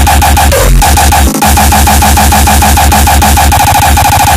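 Loud industrial hardcore electronic music: a fast, steady pulsing pattern over a heavy bass line, with two brief breaks in the first second and a half.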